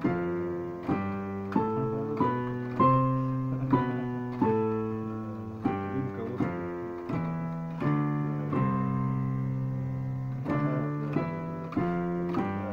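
Yamaha digital piano played with both hands: a run of chords struck one after another, each ringing and fading before the next, with one chord held for about two seconds near the end.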